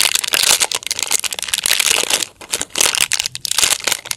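Foil blind-bag wrapper crinkling and crackling as fingers work at it to get it open, with a brief lull a little past halfway.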